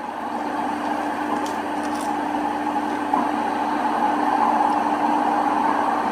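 Steady hum inside a car cabin, an even noise with a low constant tone running under it.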